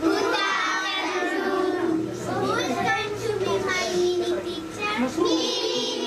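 A group of young children singing together, many voices at once, with a long held note near the end.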